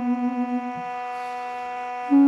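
Armenian duduk, a double-reed woodwind, holding a long note with a pulsing vibrato that ends just under a second in, leaving a quieter steady drone note sounding on its own.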